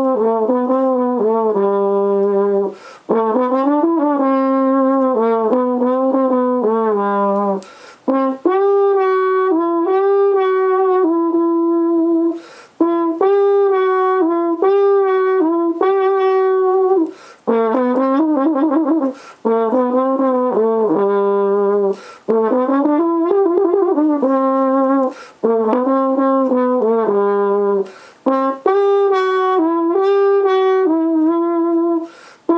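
Trombone played loud through a Softone practice mute stretched over the bell to seal it, which seems to work as a practice mute. The melody comes in phrases of a few seconds with short breaks between them and a few sliding glides.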